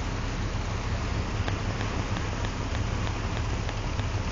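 Steady rush of floodwater and rain with a low rumble underneath. Faint regular ticks, about three a second, begin about a second and a half in.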